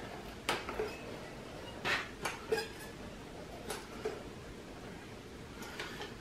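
A hand-squeezed caulking gun clicking as its trigger is worked to push out a bead of construction adhesive: a handful of light metallic clicks spaced irregularly over a few seconds, over a quiet room.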